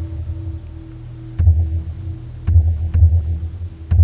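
A large temple drum struck in slow, irregular single strikes, deep and heavy, each a second or so apart, with the ringing tone of an earlier bell stroke fading underneath, as the abbot processes in at the start of a Buddhist evening service.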